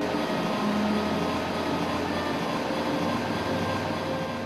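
Articulated refrigerated lorry driving past close by: a steady rushing noise of engine and tyres.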